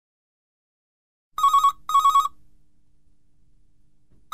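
Telephone ringing with a double ring: two short warbling electronic rings in quick succession about a second and a half in, then a faint fading tail.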